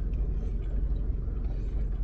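Car idling, heard inside the cabin as a steady low rumble.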